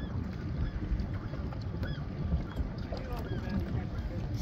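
Wind buffeting the microphone over water, with a few faint, short, high-pitched sounds scattered through it.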